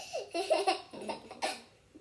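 A young boy laughing in several short bursts.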